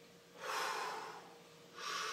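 A man breathing audibly through his lips, miming a drag on a cigarette: a long breath about half a second in, then a shorter, sharper one near the end.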